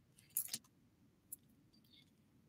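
A short, light jingling clink as clothes on hangers are handled, followed by a single faint click; otherwise quiet.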